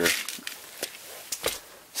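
A zippered semi-hard first aid case being handled and opened: a soft rustle, then a few light clicks and knocks.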